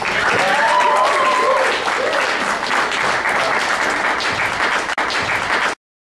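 Comedy club audience applauding, with a brief cheer from the crowd about half a second in. The applause cuts off suddenly near the end.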